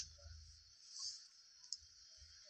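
Faint hiss with two sharp clicks, one at the start and a softer one near the end, and a brief swell in the hiss about a second in.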